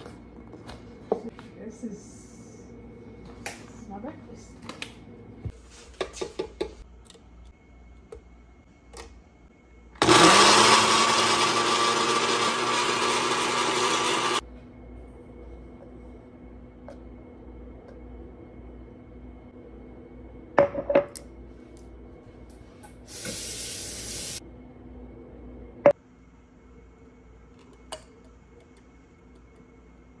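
Countertop blender starting up and running for about four and a half seconds, blending an ice cream milkshake, its motor rising in pitch as it spins up; it is the loudest sound here. Around it come scattered knocks and clicks of kitchen handling, and a short hiss several seconds after the blender stops.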